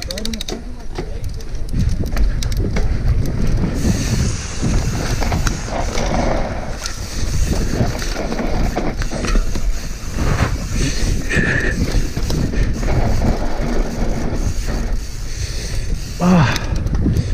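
Mountain bike running fast down a dry dirt trail, heard from a camera mounted on the rider. Continuous tyre rumble and bike rattle over bumps are mixed with wind on the microphone, with many small knocks throughout and a quick run of clicks at the very start.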